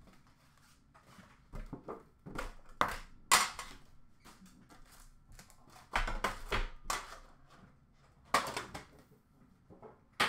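Hockey card packs being handled and pulled from a metal Upper Deck card tin: scattered crinkles of foil wrappers with light clicks and knocks, coming in short spurts, the sharpest about three seconds in and again after six seconds.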